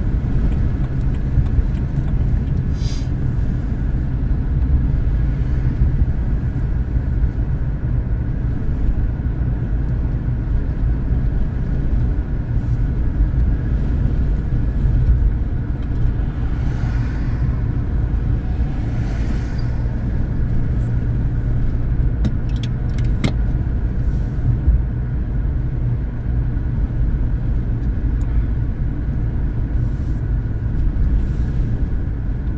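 Steady low rumble of a car driving at road speed, heard from inside the cabin: engine and tyre noise.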